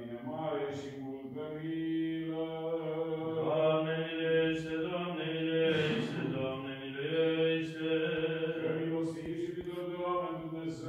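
One man chanting an Eastern Orthodox vespers hymn in Romanian, with long held notes that move slowly from pitch to pitch.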